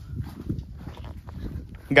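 Low, uneven rumbling with irregular knocks and bumps, as of a car lurching along a rough unpaved track, with faint voices under it.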